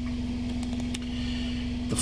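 Toyota Previa 2.4-litre four-cylinder engine idling steadily, heard from inside the cabin as an even low hum with a constant drone. It is running on a freshly cleaned mass airflow sensor.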